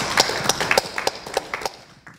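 Sparse applause from a small audience: individual hand claps at an uneven rhythm, thinning out and growing quieter toward the end.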